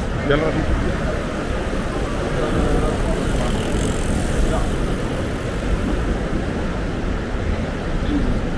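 City street ambience: a steady hum of outdoor noise with a low rumble, with voices fading away in the first second.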